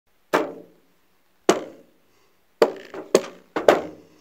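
Five sharp knocks, each with a short ringing tail. The first three come about a second apart and the last two about half a second apart, in an even beat.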